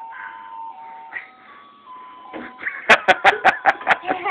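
A simple electronic tune in single held notes that step up and down in pitch. From about three seconds in, a quick run of sharp pulses, about six a second, comes in over it and is the loudest part.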